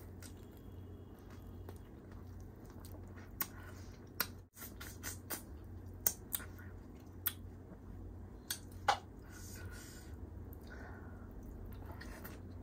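Close-up eating sounds: a person chewing tandoori chicken taken by hand, with soft wet chewing and sharp mouth clicks and smacks at irregular intervals over a steady low hum. The sound drops out briefly about four and a half seconds in.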